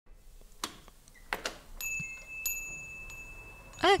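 Shop door bell ringing as the door is opened: a few light clicks from the door, then the bell rings about two seconds in, rings again, and hangs on while fading. A startled voice comes in at the very end.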